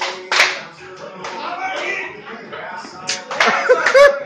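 A country-style song with a singer playing over a dance floor, with several loud, sharp hand claps, the loudest just after the start and again near the end.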